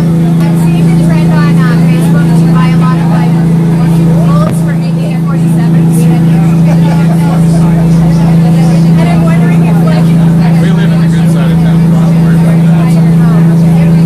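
Dive boat's engine running in a loud, steady, unchanging drone inside the cabin, with people talking and laughing over it.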